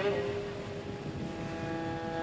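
Soft background score of held string notes that shift to a new chord about half a second in, over a low steady rumble from the boat.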